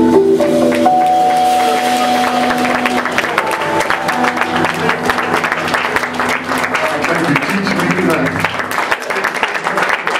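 An organ trio's final held chord of organ and electric guitar rings out and fades over the first few seconds. Audience applause rises under it and fills the rest, dying away near the end.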